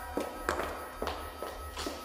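A woman's heeled shoes stepping on a concrete floor, sharp clicks about twice a second, over low sustained background music.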